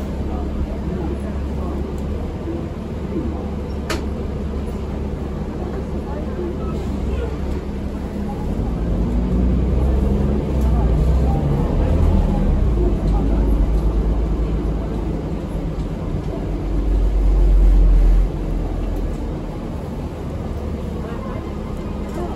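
Interior ride noise of a New Flyer D40LF diesel city bus: a steady low engine and road rumble that grows louder from about eight seconds in, peaks near eighteen seconds, then drops back quickly. A single sharp click comes about four seconds in.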